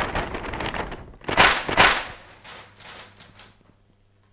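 Brown paper bag crinkling and rustling as it is opened and handled, loudest about a second and a half in, then dying away in a few softer crinkles before it stops near the end.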